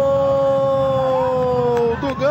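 A football commentator's long drawn-out cry of "gol", held on one steady pitch and dropping slightly before it breaks off near the end.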